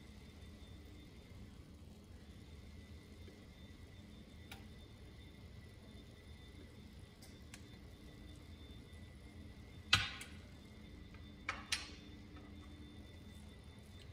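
Faint steady hum of a quiet kitchen, broken by clinks of utensils being handled: a faint click about four seconds in, one sharp clink about ten seconds in, and two lighter clicks a little over a second later.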